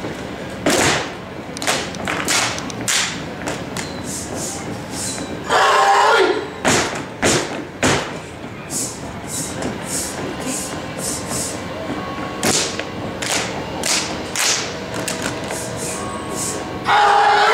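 Step team stepping: feet stomping on a stage floor and hands clapping and slapping, a run of sharp hits in an uneven, syncopated rhythm. A short loud burst of voices comes about five and a half seconds in.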